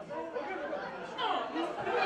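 Many spectators' voices talking and shouting at once: crowd chatter at a football match, growing louder near the end.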